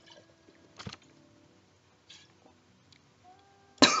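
A man downing a drink from a small glass: a few faint gulping sounds, then a loud, sharp gasp of "ah!" near the end as it goes down.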